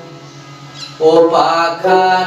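Male folk singer singing Bhawaiya to his own plucked dotara: the voice drops out and the dotara carries on alone for about a second, then the voice comes back in on a long held note that bends in pitch.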